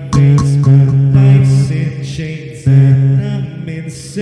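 Beatbox loopstation performance: layered vocal loops of sustained, chant-like low droning voices over repeated percussive beatbox hits, cycling in a steady pattern.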